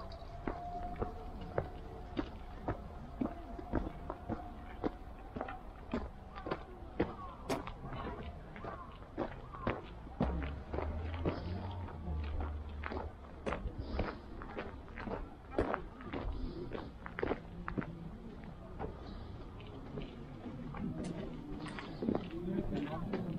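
Footsteps on a dirt and gravel path, a step about every half second throughout, with faint voices near the end.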